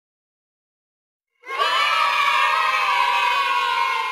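A group of children cheering, starting suddenly about a second and a half in and held loud and steady.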